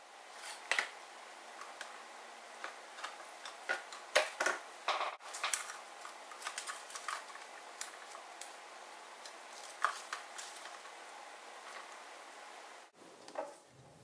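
Scattered light clicks and taps of hands handling a cardstock band and a roll of double-sided tape as the band is folded over and taped closed.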